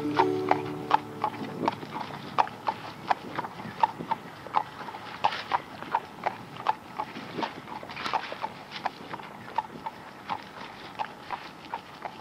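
Horse's hooves clip-clopping in an uneven rhythm of about three strikes a second, used as the song's percussion. A held instrumental chord dies away about a second and a half in, leaving the hoofbeats on their own.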